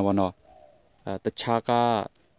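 Speech only: a man reading radio news in Burmese, with a short pause about half a second in.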